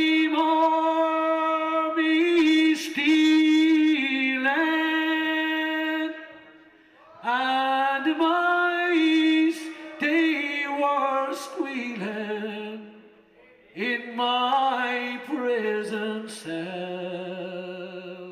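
A man singing a slow ballad unaccompanied into a microphone, in long held notes. The notes come in three phrases, with short pauses about six and thirteen seconds in.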